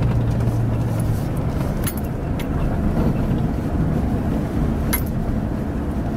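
Cabin road noise of a vehicle driving along a town road with a trailer in tow: a steady low rumble of engine and tyres, with a low hum that drops away about a second in and a few light clicks.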